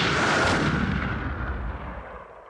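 Deep, explosion-like sound effect: a dense noisy wash with a low rumble that fades away steadily over about two seconds.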